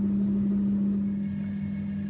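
Steady low hum of a machine or appliance with a fainter high whine joining about halfway: background noise under the recording.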